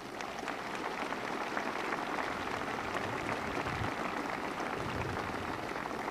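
A large crowd applauding, swelling over the first second and then steady.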